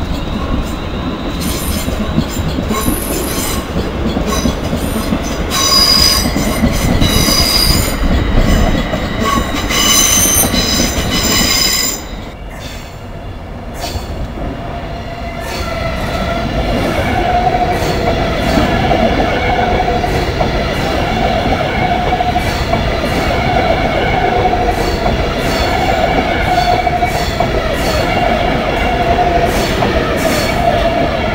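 A London Midland Class 350 electric multiple unit rolls over the tracks with a steady rumble, its wheels squealing shrilly for several seconds. After a sudden break, a Virgin Trains Class 390 Pendolino passes close at low speed, giving a steady whine over the rumble of its wheels.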